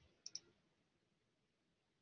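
Two quick clicks of a computer's pointer button, about a quarter second in, clicking a link; near silence follows.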